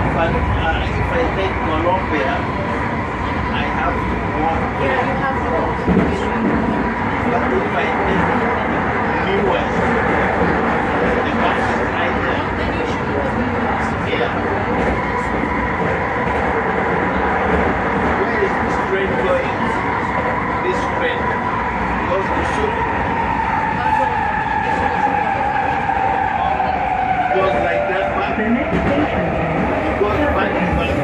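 SkyTrain car running on its rails: a steady rumble of wheels and track noise with the whine of its linear induction motors. Over the last several seconds the whine falls in pitch as the train slows into a station.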